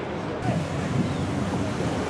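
Wind rushing over the camera microphone, a steady rough noise, with faint distant shouts from players on the pitch.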